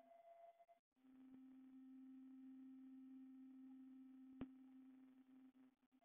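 Near silence with a faint, steady low hum with overtones, and a single sharp click about four and a half seconds in.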